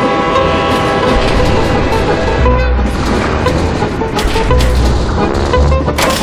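Dramatic film music mixed with a train locomotive running, its low rumble pulsing under long held tones, with the train's horn sounding.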